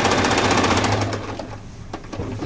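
Singer 8280 electric sewing machine running fast, its needle hammering out a rapid even rhythm while sewing a decorative embroidery-type stitch, then slowing and stopping about a second in.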